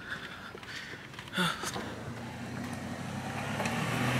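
A car engine running close by in a parking lot, its low hum growing louder toward the end as the vehicle approaches. There is a brief, faint noise a little over a second in.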